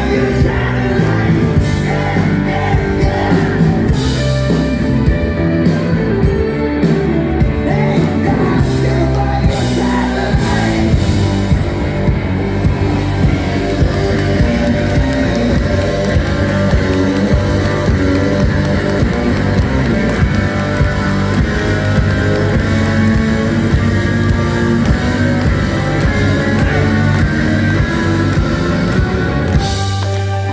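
A rock band playing live, with electric guitars, bass, keyboards, drums and singing.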